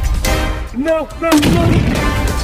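Dubbed-in gunfire and explosion sound effects, with several sharp blasts, over background music. A brief vocal cry with a bending pitch comes about a second in.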